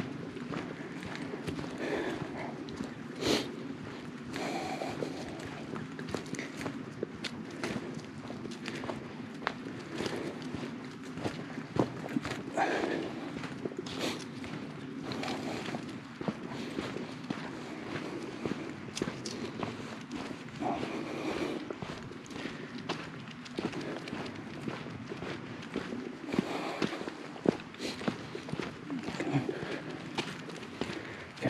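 Footsteps of a hiker walking along a leaf-covered dirt trail and then onto bare rock: irregular steps and scuffs.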